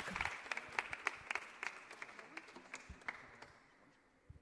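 A small group of people applauding, the individual claps thinning out and dying away about three and a half seconds in.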